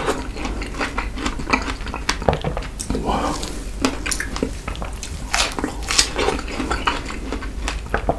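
Close-up chewing of fresh strawberries: wet, juicy bites and mouth clicks, a rapid run of short sharp crackles.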